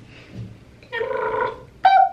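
A person's voice: a short held, pitched hum or vowel about a second in, lasting about half a second, then a sudden louder pitched sound starting just before the end.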